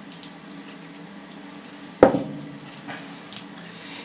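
Seasoning being added to a bowl of sauce: faint ticks of a small glass salt jar being handled, then a single sharp clink of glass on a hard surface about halfway through, ringing briefly.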